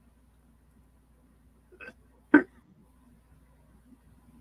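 Two short, abrupt vocal bursts from a person, a faint one and then a much louder one about half a second later.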